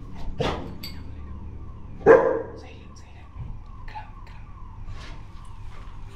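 A dog barking twice, once about half a second in and again, louder, about two seconds in.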